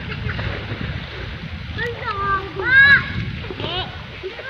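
Shallow river water running over stones, with a person's voice calling out a few times in short rising-and-falling calls, the loudest about three seconds in.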